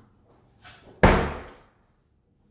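A closet door is shut with a single sharp bang about a second in, and the sound dies away within half a second.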